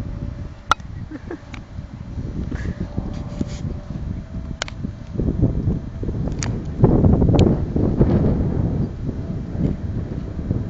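Wind buffeting the camera microphone, a fluctuating low rumble that swells loudest about seven seconds in. About four sharp clicks cut through it.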